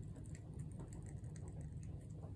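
Faint scattered light clicks and taps from gloved hands handling small plastic paint cups and a plastic spoon while layering paint, over a low steady hum.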